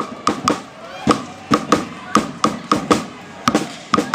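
Rapid, uneven sharp bangs, about two or three a second, each with a short ringing note, over a low crowd haze at a hockey rink.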